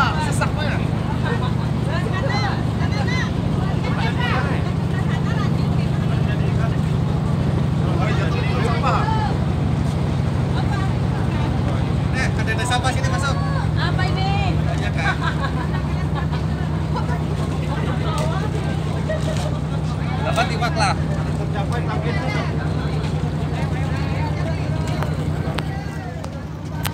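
Boat engine idling steadily at the quayside, a constant low hum, with people talking over it.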